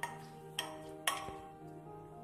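A plastic spoon knocking against the inside of a pressure cooker three times as vegetables are stirred in it, over soft background music with steady held notes.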